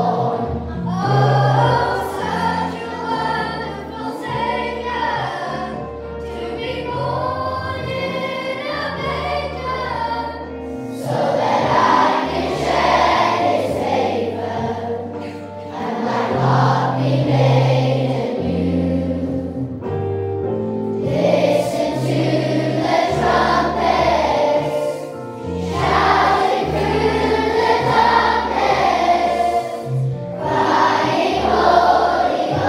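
Children's voices singing a Christmas song together over instrumental accompaniment, the words following the on-screen lyrics about the night Christ was born.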